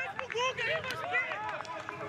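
Several men shouting and calling out over one another on the pitch, fairly quiet, with no crowd noise underneath.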